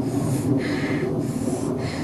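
A man breathing hard and fast close to the microphone, about two breaths a second, as after running, over a steady low hum.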